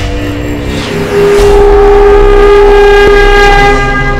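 Logo-intro sound effect: a loud, held pitched tone with many overtones over a low rumble, swelling about a second in and falling back near the end.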